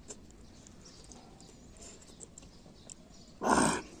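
Faint lip smacks and finger-licking from eating curried chicken by hand. About three and a half seconds in comes one loud, short sound lasting under half a second.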